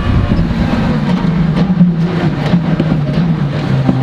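Skoda WRC rally car's turbocharged four-cylinder engine running hard, heard from inside the cabin with road and tyre noise. Its pitch steps down over the last second or so as the car slows for a chicane.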